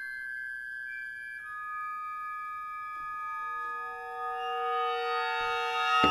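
Contemporary concert music: a chord of steady, held high tones, with new lower pitches entering one after another so the chord thickens and swells louder near the end.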